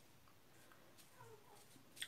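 Near silence: room tone, with only very faint incidental noises.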